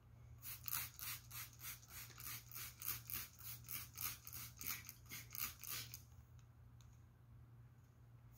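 Hand trigger spray bottle squeezed rapidly, three or four short hissing squirts a second, dampening cloth before ironing. The squirting stops about six seconds in.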